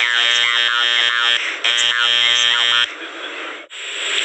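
A man's voice holding a drawn-out, croaking throat sound in two long stretches with a short break between them. It gives way near the end to a steady hiss like running shower water.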